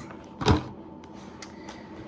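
A single sharp knock about half a second in, from a grocery item being handled and set down on a table while a shopping bag is unpacked, then faint handling noise.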